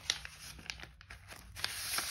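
Clear plastic wrapping on a pack of vellum paper crinkling and tearing as it is pulled open, with scattered sharp crackles and a louder rustle near the end.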